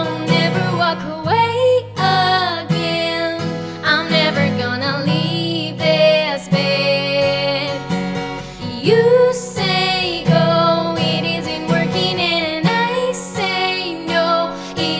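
A woman singing a slow pop ballad while strumming chords on an acoustic guitar with a capo.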